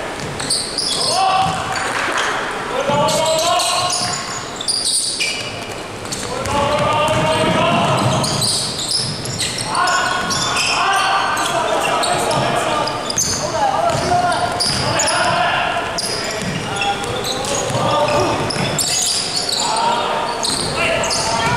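Basketball game in a large sports hall: the ball bouncing on the court floor among players' shouts and calls, with the echo of the hall.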